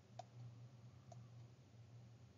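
Near silence: a low steady hum with two faint clicks, about a fifth of a second in and again about a second in, from handwriting input on a computer as numbers are written on screen.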